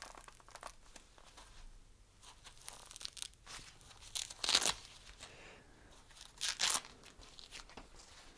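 Hook-and-loop strap of a fabric knee support being peeled open: two short tearing rips a couple of seconds apart, the second a little longer, with quieter fabric and packaging rustles in between.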